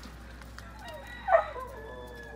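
Ducks calling: a few squeaky calls that slide down in pitch, with one short, loud call a little over a second in.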